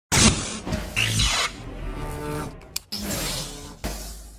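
Short electronic intro sting for a channel logo: abrupt glitchy hits and swooshes over a low bass, ending on a last hit just before the end that rings out into a fading bass note.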